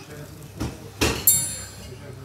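Crockery clinking on a table: a couple of light knocks, then a short ringing clink about a second in.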